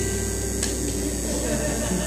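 A steady low electrical hum from the stage sound system under a faint crowd murmur, as the last sustained notes of the song fade out in the first half second.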